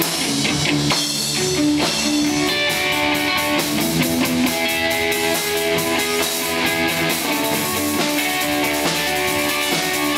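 Live rock band playing an instrumental passage: electric guitar and bass guitar over a drum kit, with cymbals keeping a steady beat.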